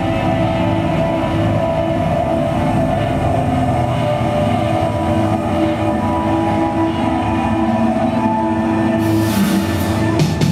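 Live band music: a steady, sustained droning chord of several held tones over a low rumble. A cymbal wash swells in about a second before the end, just ahead of the drums.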